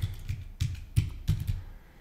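Typing on a computer keyboard: a handful of separate, irregularly spaced key clicks.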